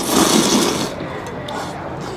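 A loud slurp of hot beef noodle broth sipped from a metal wok ladle, lasting about a second at the start.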